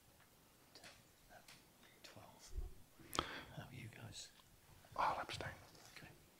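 Faint whispering and low murmured voices, with a sharp click about three seconds in and a slightly louder murmur near the end.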